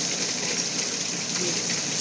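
Steady splashing hiss of water falling in an artificial backyard waterfall.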